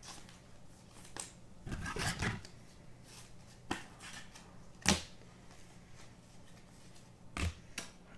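Trading cards being slid and flipped through by hand, a few short rasps and taps of card against card, the sharpest about five seconds in, over a faint steady low hum.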